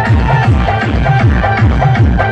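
Loud DJ dance music with a fast, steady beat and heavy bass that slides down in pitch on each beat.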